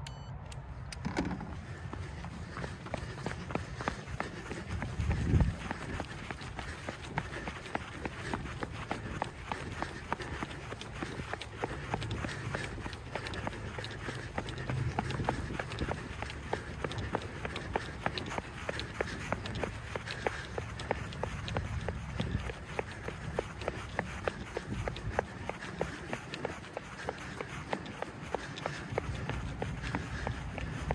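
Running footsteps on a rubberized running track, a quick, even rhythm of foot strikes, over a low rumble, with a louder thump about five seconds in.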